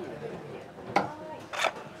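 A sharp clink about a second in, then a short rattle, from ice and glassware being handled at a cocktail bar cart, over faint voices.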